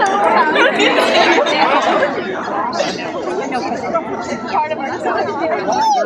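Crowd of high-school band members chattering, with many voices overlapping. It is a little louder in the first two seconds.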